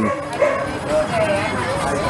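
Dogs in animal-shelter kennels barking, many at once in an unbroken, overlapping din.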